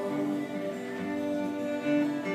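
Live folk band playing an instrumental passage: violin with acoustic and electric guitars, the notes held and sustained, no vocals.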